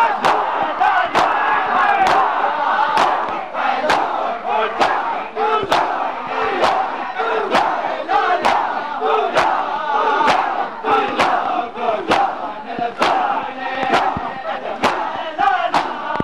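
Mourners doing matam, beating their chests with open hands in unison: a sharp slap a little more than once a second, over the massed voices of the crowd chanting.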